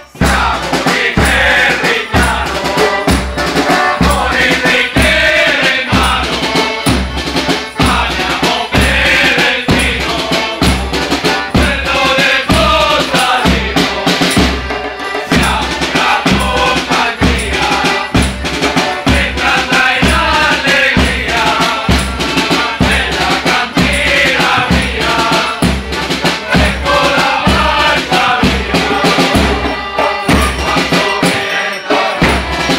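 A folk group singing a song together in chorus, with drums and rattling percussion keeping a steady beat of about two strokes a second.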